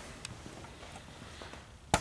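Quiet shop room tone with a few faint ticks of footsteps and camera handling as the person filming shifts position, and a sharp click near the end.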